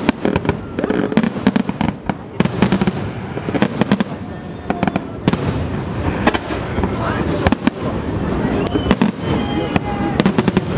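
Aerial firework shells bursting in rapid succession, sharp bangs coming in quick clusters every second or so over a continuous low rumble.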